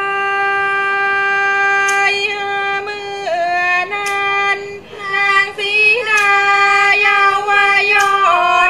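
A woman singing a Thai classical vocal line: a long held note for the first two seconds, then ornamented steps and slides between pitches, with a brief breath break about five seconds in.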